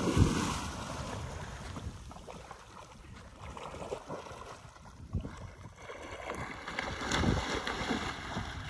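A dog plunging into a river with a loud splash at the start, then swimming away with softer paddling splashes. Wind rumbles on the microphone throughout.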